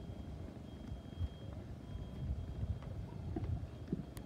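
Low, irregular rumble of wind buffeting the microphone outdoors, with a faint thin high tone coming and going.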